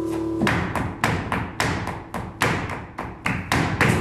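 Flamenco dancer's shoes stamping on the stage floor, about a dozen sharp, unevenly spaced strikes in seguiriya rhythm, as a held guitar chord dies away in the first half second.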